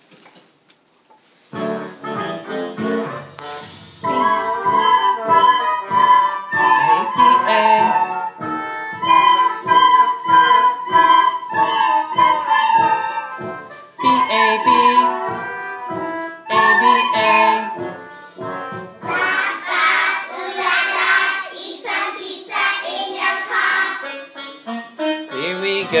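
A class of children playing soprano recorders in unison, alternating between the notes B and A over a recorded accompaniment. The accompaniment starts about a second and a half in and the recorders join about four seconds in. Near the end a busier, brighter passage of the accompaniment takes over.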